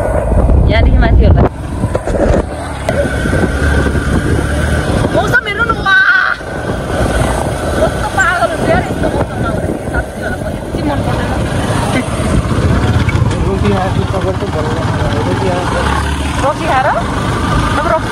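Motorcycle running at road speed with wind rushing on the microphone, and voices calling out now and then over it.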